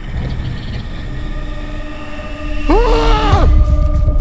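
Ominous horror-trailer soundtrack: a low rumbling drone with steady held tones, swelling about two-thirds in under a loud cry that rises and falls in pitch for under a second.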